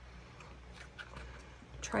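Faint rustle and light taps of a paper-covered card being slid and lined up in the slot of a plastic circle punch, over a low steady room hum.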